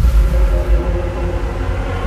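A deep cinematic rumble that starts suddenly, with sustained droning musical tones above it.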